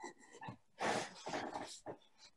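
A dog's short vocal sounds, a few brief bursts, the longest about a second in.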